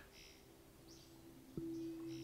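A near-silent pause with a few faint, short high chirps like small birds. About one and a half seconds in, soft background music enters with low notes held steady.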